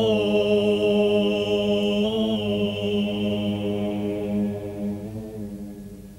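Chant of low voices holding long notes over a steady low drone, the upper notes shifting at the start and again about two seconds in, then fading out over the last couple of seconds.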